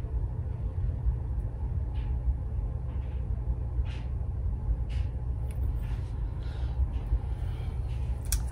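Fingers untwisting a two-strand twist of coily hair, a few faint soft rustles, over a steady low rumble.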